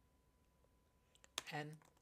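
Three or so faint computer keyboard keystrokes a little over a second in, typing a few characters of code; before them, near silence.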